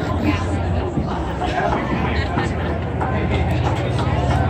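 Indistinct chatter of several voices, with a steady low hum underneath.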